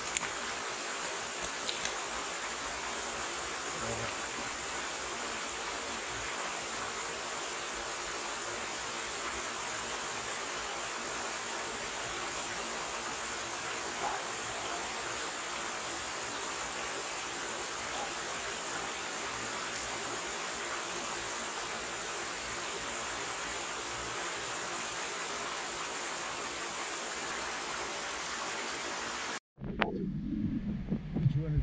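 Shallow stream running over stones: a steady, even rushing hiss with a few faint ticks, cutting off abruptly near the end.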